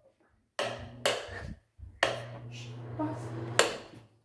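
Bathroom exhaust fan on a wall rocker switch, starting suddenly about half a second in with a steady low hum and rush of air, breaking off briefly and running again, with a sharp click near the end.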